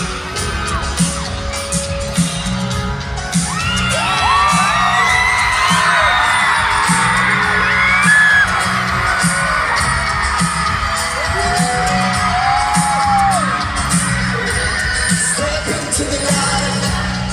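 Live pop band playing a song with a steady beat through a stadium PA, heard from the crowd. From about four seconds in, many fans scream and whoop over it, rising and falling in pitch.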